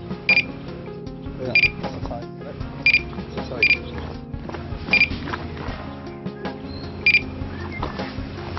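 Electronic carp-fishing bite alarm giving six short high beeps at uneven intervals, a sign of line being pulled by a fish taking the bait. Background music plays underneath.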